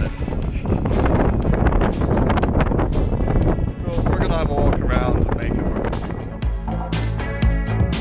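Wind buffeting the microphone under men's voices, then background music with a steady beat comes in about six and a half seconds in.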